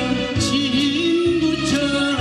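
A male singer sings a Korean pop song into a handheld microphone over a backing track. His held notes bend and waver with vibrato over a steady bass beat.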